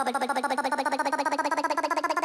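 Electronic dance track build-up: a rapid, machine-gun-like stutter of a pitched sound, many pulses a second, slowly rising in pitch.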